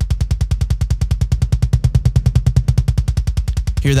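Soloed metal kick drum playing a fast double-kick run, about eleven even hits a second. An EQ bell boost exaggerates a boomy low 'woof' resonance that the mix cuts out.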